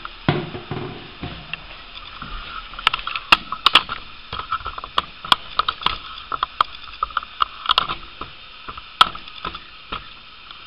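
A run of irregular sharp clicks and knocks, several a second at times, starting about three seconds in. They are the sound of hard objects being handled at close range.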